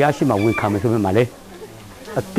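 A man speaking, then a short pause about halfway through.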